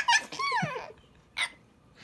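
Baby laughing: high squealing sounds that rise and fall in the first second, then a short sharp breath about a second and a half in.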